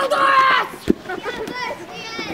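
A group of children shouting and calling out while playing gaga ball, with one loud high shout at the start and a single sharp thump a little under a second in.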